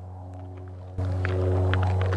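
A steady low hum that gets louder about a second in, with a faint hiss over it.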